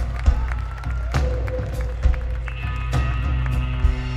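Live rock band playing an instrumental passage: electric guitars and keyboard over a heavy bass line with drum hits. Several sustained chord notes come in about two and a half seconds in.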